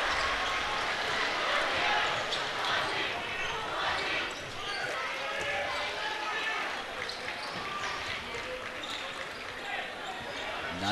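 A basketball being dribbled on a hardwood gym floor, with a crowd chattering and calling out in the echoing gymnasium.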